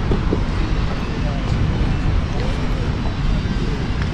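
Steady low rumble of distant city traffic, with no single event standing out.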